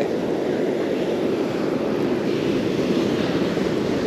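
Steady rushing wash of surf breaking along the shoreline, mixed with wind on the microphone.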